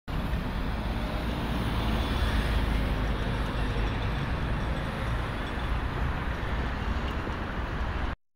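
Steady outdoor city ambience, a low rumble of road traffic with no distinct events, which cuts off abruptly at the end.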